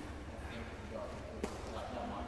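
One sharp thud about one and a half seconds in, over a low steady rumble and faint voices in the background.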